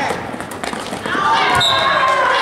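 A basketball bouncing on a gym floor as a player dribbles: a couple of thuds, with voices shouting across the gym.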